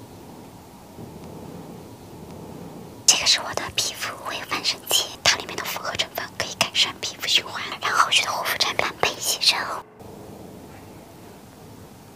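A woman whispering in Chinese close to the microphone, starting about three seconds in and breaking off sharply near the end; before and after it only a faint background hum.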